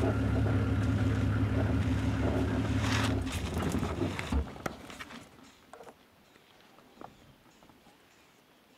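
Open safari vehicle's engine running with a steady low hum, then switched off about four seconds in, ending in a low thump. What follows is near silence with a couple of faint clicks.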